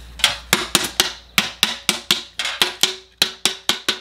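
Metal paint-can lid being tapped shut with the plastic handle of a screwdriver, about five quick light taps a second, each with a short metallic ring from the can, seating the lid to seal it.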